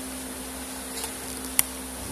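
Steady background hum over a low hiss, with a couple of faint clicks, one about a second in and a sharper one near the end.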